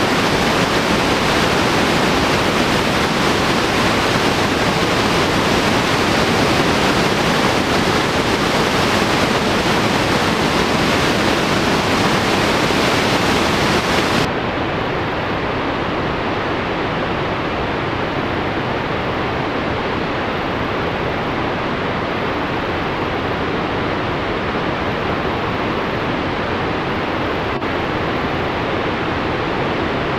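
Iguazu Falls' white water rushing in a loud, steady, even noise. About halfway through it drops suddenly to a softer, duller rush as the falls are heard from farther off.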